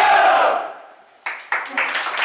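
A football team's loud group shout in a huddle, answering a count of three, fading within about a second into laughter. A little after a second in it cuts suddenly to a different, noisy sound.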